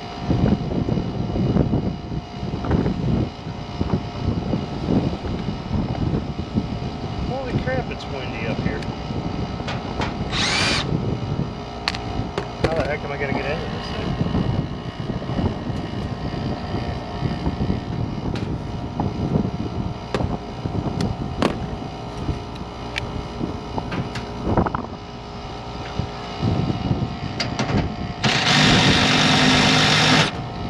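Wind gusting across the microphone, a heavy rumble that rises and falls, with a faint steady mechanical hum beneath. A louder rush of noise comes near the end.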